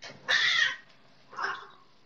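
A cat's harsh cry in a fight between two cats, twice: a loud one lasting about half a second, just after the start, and a shorter, fainter one about a second and a half in.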